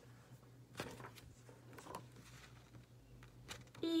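Faint rustles and light taps of paper note cards being handled and one drawn from a stack.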